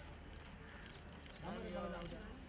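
Background voices of people talking over a steady low hum, with a light scatter of clicks; one voice comes up louder about one and a half seconds in.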